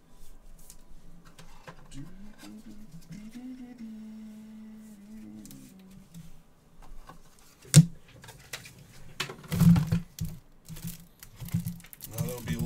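A man humming a few low, wavering notes, then cards and card holders being handled on a tabletop: one sharp knock, the loudest sound, a little past halfway, followed by a run of softer clicks and thuds as they are set down.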